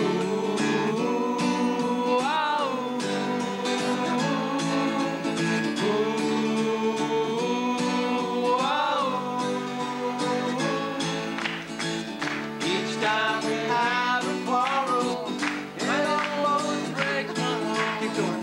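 Male voices singing together in long held notes, accompanied by a strummed guitar.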